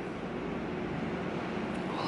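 Steady whir of a running desktop PC and its 120 mm case fans: an even hiss with a faint low hum underneath.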